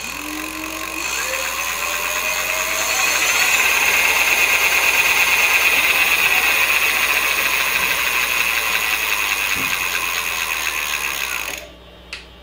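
Electric bike's rear hub motor spinning the lifted rear wheel under throttle. The pitch rises over the first three seconds or so, then holds steady at top speed with a high whine above it. It cuts off shortly before the end as the brakes stop the wheel.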